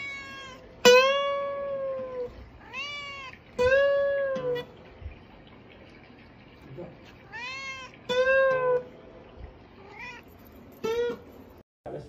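Domestic cat meowing, about seven meows in short runs with pauses between them, each arching up then down in pitch. The first, about a second in, is the longest and loudest.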